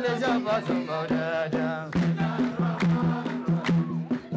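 Group of men singing a hadra, an Ethiopian Islamic devotional chant, with a wavering melody led over a microphone, accompanied by hand drums beaten in a steady rhythm and handclapping.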